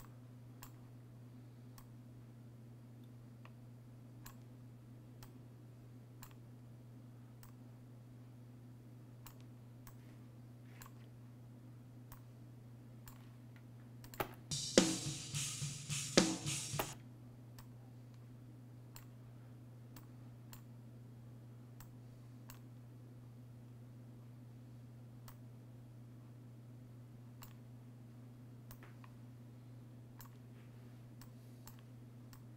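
Computer mouse clicking every second or so over a steady low hum. About halfway through, roughly two and a half seconds of recorded drum-kit playback, a quick run of hits with cymbal wash, then the clicks resume.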